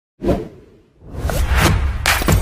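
Whoosh sound effects of an animated intro: a sudden hit a quarter second in that fades away, then a swelling whoosh over a low bass from about halfway through, with a couple of beat-like strikes.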